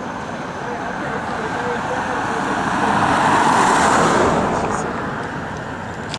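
Road traffic noise: a vehicle's tyre and engine noise swells to a peak about three and a half seconds in as it passes, then fades.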